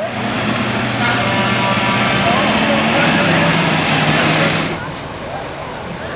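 A motor engine running loud and close, steady, then cutting off suddenly about three-quarters of the way through, with people talking in the background.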